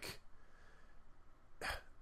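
A short pause in conversation with faint room tone, broken near the end by one quick, sharp breath-like sound from a person, a short hiss without voice.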